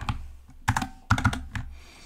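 Keystrokes on a computer keyboard: a short cluster of key clicks about two-thirds of a second in, and a few more just after a second in.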